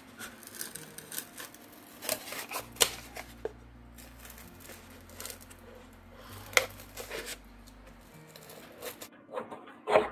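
Scissors cutting a craft sheet: a handful of separate, irregular snips with paper-like handling rustles between them.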